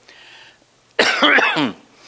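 A man coughs once, a single harsh cough of under a second, about a second in, between quiet pauses.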